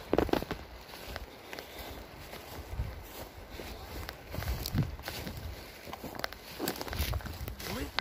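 Footsteps through moss and low shrubs on a forest floor, an irregular run of soft steps with rustling of the plants.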